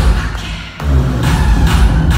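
Loud live electropop concert music with a heavy bass beat. The music drops out briefly just after the start, then comes back in with a thump less than a second in.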